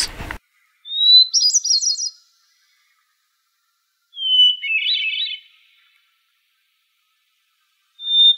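Two short high chirping calls about three seconds apart. Each opens with a gliding whistle and breaks into a quick run of warbled notes.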